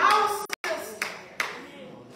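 A few sharp hand claps, about two a second, following a voice at the start and trailing off.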